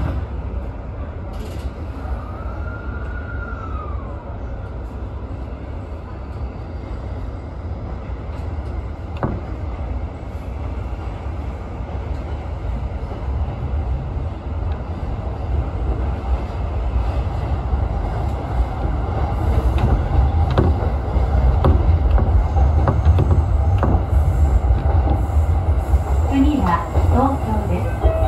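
E231-series electric commuter train heard from inside the driver's cab as it pulls away and gathers speed: a steady low rumble of the running gear that grows louder over the stretch, with a few sharp rail clicks. A brief high whine rises and falls a couple of seconds in.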